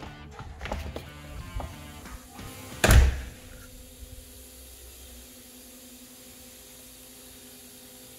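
An interior panel door with a metal knob is opened and goes shut with one loud thud about three seconds in. After that a steady low hum continues.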